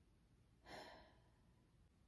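One faint breath from a woman, a soft sigh lasting about half a second; otherwise near silence.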